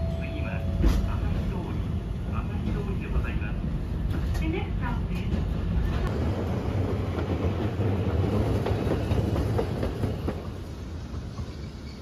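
Inside a city streetcar under way: the steady low rumble of the running car, with a sharp knock about a second in.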